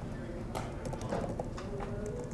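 A run of computer keyboard clicks starting about half a second in, as text is typed into a form field.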